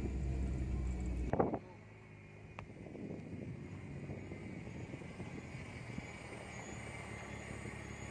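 Car engine drone heard from inside the cabin while driving slowly on a dirt road, cutting off suddenly with a short knock about a second and a half in. After that comes a much quieter outdoor background: a faint low rumble and rustle with a single faint click.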